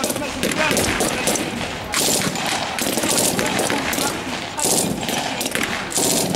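Irregular rifle fire from several firing positions, shots coming singly and in quick bursts throughout.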